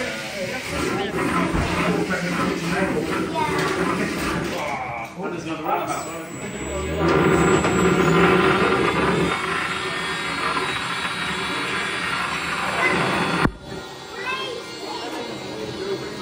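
Antweight horizontal bar spinner's weapon motor spinning its metal bar at half power: a steady whine that comes up loudest about seven seconds in for a couple of seconds, then runs on. A sharp knock comes near the end, over background voices and music.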